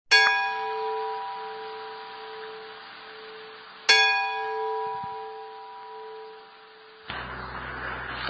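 A bell struck twice, about four seconds apart, each strike ringing out and slowly fading. Near the end a steady hiss with a low hum comes in.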